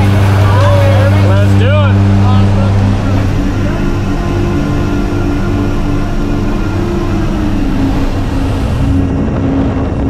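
Steady drone of a skydiving plane's engines heard inside the cabin, with voices over it for the first couple of seconds. About three seconds in, the hum gives way to a louder, rougher rush of engine and wind noise as jumpers go out the open door.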